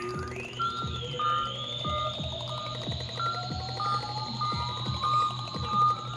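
Electronic music played on a Novation MiniNova synthesizer: a slowly rising pitch sweep over a steady low drone, with a short high note pattern repeating and a kick-drum beat about twice a second.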